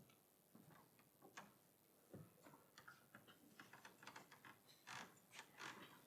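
Faint, scattered clicks and light knocks of people moving at a lectern and desk, with footsteps, paper handling and small bumps. They come more often in the second half.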